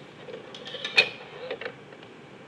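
A long ruler and a plastic set square being set down and slid into place on a drawing board: a quick run of clicks and light knocks, the sharpest about halfway through, with a couple more just after.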